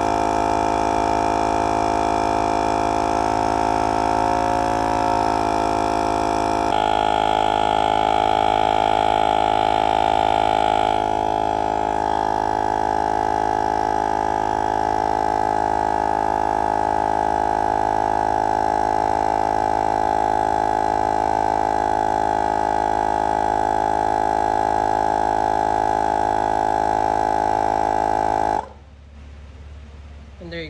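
Victor portable tire inflator's electric compressor running under load, pumping up a car tire with a loud, steady buzz. It cuts off suddenly near the end: the automatic shut-off stopping it at the set 35 psi.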